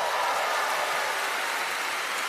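A large congregation applauding: a steady hiss of many hands clapping, with no music.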